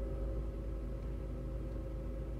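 Car engine idling, heard from inside the cabin: a steady low rumble with a faint constant hum over it.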